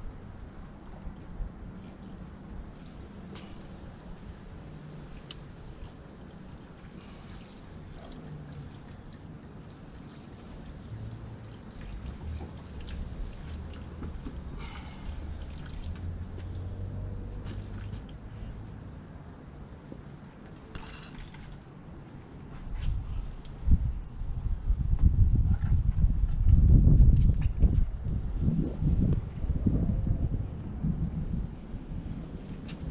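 Liquid trickling and dripping: CLR calcium, lime and rust cleaner poured through a funnel into a clogged heater core, draining out a clear hose into a plastic bucket. Over the last several seconds, wind rumbles on the microphone and is the loudest sound.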